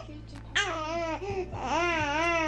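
Wordless, sing-song vocalizing with a quickly wavering pitch, in two runs of about a second each, like playful babbling or laughter-like cooing with a baby.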